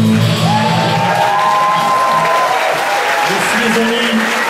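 Live amplified rock band ending a song: the last held chord stops about a second in, and the audience starts cheering and applauding.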